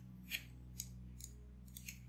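Thin pencil scratching on paper in four or five short, quick strokes, over a faint steady low hum.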